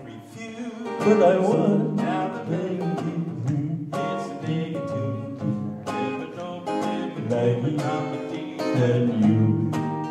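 Acoustic guitar picking and strumming an old-time ballad, with a man's voice singing along in places.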